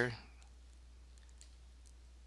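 A few faint computer mouse clicks over a steady low electrical hum, just after the tail of a spoken word.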